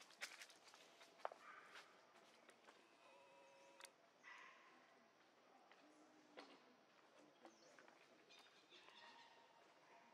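Near silence: faint outdoor background with scattered light clicks and a few brief, faint pitched sounds.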